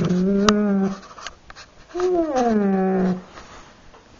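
A husky 'talking': a long, level, pitched call that stops about a second in, then a second call about two seconds in that starts high and slides down in pitch. A single sharp click sounds about half a second in.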